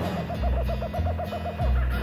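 Cartoon bird's warbling hoot, a rapid trill of about ten wobbles a second lasting just over a second, over the low bass notes of the theme music.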